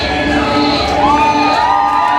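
Nightclub crowd cheering and shouting with whoops over loud dance music with a repeating beat. The beat drops out near the end.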